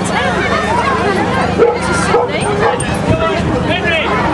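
Dog yipping and barking in short, excited calls, over crowd chatter.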